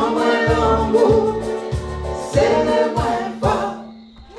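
Several singers singing together in harmony into microphones over a live band backing with a steady beat. The song ends just before the close, the voices and music stopping.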